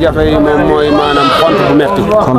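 A man talking into a microphone while sheep bleat behind him.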